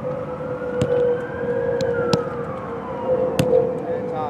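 A siren wailing, its pitch rising slowly and falling back over a steady lower tone, with several sharp thuds of a soccer ball being struck.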